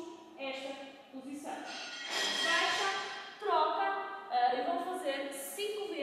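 A woman speaking throughout, at a moderate level.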